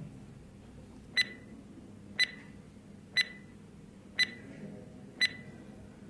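Quiz countdown timer sound effect: five short, high beeps, one a second, ticking off the time allowed to answer.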